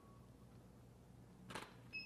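Near silence: faint low room hum, with a brief soft noise about one and a half seconds in and a short high beep at the very end.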